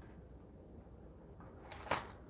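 Faint room tone, then two sharp clicks in quick succession near the end: a folding pocket knife being handled and opened.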